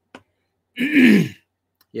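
A man clearing his throat once, about a second in: a single harsh, rasping vocal sound about half a second long that falls in pitch.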